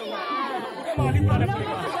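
Crowd of people talking over one another, many voices at once. About a second in, a loud, steady low drone joins them.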